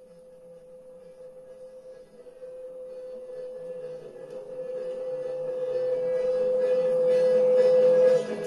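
A single sustained tone at one pitch from an experimental amplified sound sculpture, swelling steadily louder, with higher overtones filling in near the end.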